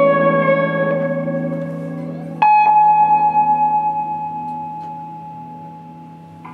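Improvised electric guitar playing: a low note sustains underneath while a single high note is struck at the start and another about two and a half seconds in, each ringing out and slowly fading away.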